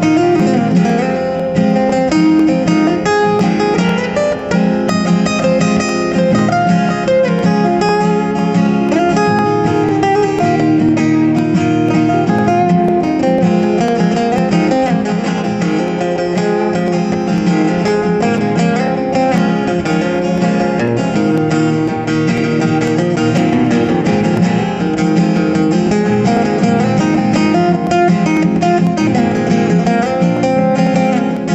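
Two acoustic guitars playing an instrumental passage with strummed chords, steady throughout.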